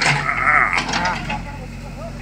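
A shrill, drawn-out cry lasting most of the first second, over the steady low hum of a backhoe loader's diesel engine running.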